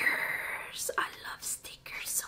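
A woman whispering breathily under her breath, a drawn-out breathy sound followed by a few short, soft syllables.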